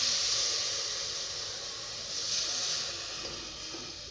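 Water poured from a plastic bottle into an aluminium pot of jaggery lumps on the stove, making a steady hiss that slowly fades.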